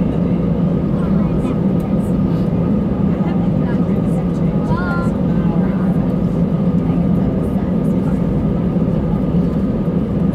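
Airbus A319 cabin noise while taxiing on the ground: the engines at idle give a steady hum with a constant higher whine, heard from inside the cabin.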